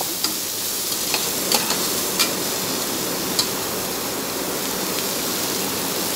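Sliced onions and green chillies sizzling steadily in hot oil in an aluminium pressure cooker, with a few light clicks of a metal slotted spoon against the pot as they are stirred.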